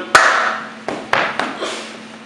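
Sharp strikes of a staged beating: one loud blow just after the start, then three quicker ones about a second in.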